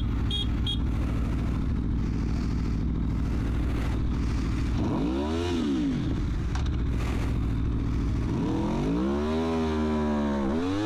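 Sport motorcycle engine idling steadily, then revved twice: a short blip about halfway through and a longer rev near the end.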